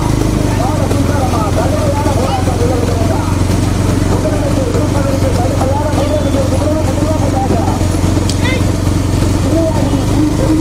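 Motorcycle engines running steadily behind racing bullock carts, under many voices shouting and calling.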